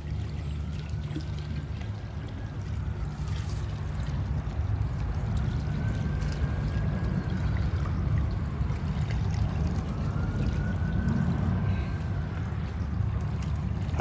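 A steady low rumble with a watery hiss, and a faint high tone that rises and falls three times.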